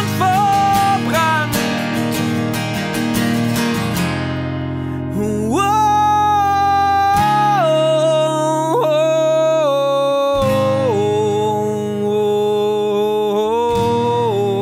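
Male voice singing with a strummed acoustic guitar; about four seconds in the quick strumming gives way to single chords left to ring while the voice holds long notes that step down in pitch.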